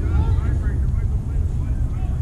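Steady low rumble of wind on the microphone, with faint voices in the distance.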